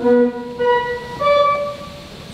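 Church organ played by hand: a short run of held, steady notes, each about half a second, stepping upward in pitch, with a solemn sound.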